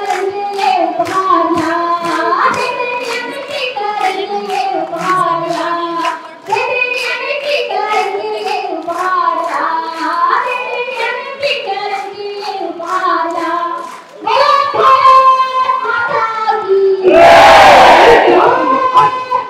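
A woman sings a song through a microphone and PA while the crowd claps along in time, about two claps a second. About a second before the end a loud burst of crowd cheering and applause breaks in, the loudest moment.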